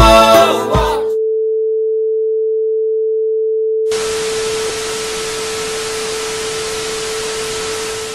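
Theme music cuts off about a second in and leaves a steady single-pitch test-card tone, as under a 'technical difficulties, please stand by' screen. About four seconds in, a loud TV static hiss joins the tone and runs alongside it.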